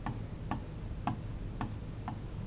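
Sharp taps of a pen on an interactive whiteboard's screen while drawing, about two a second, over a low steady hum.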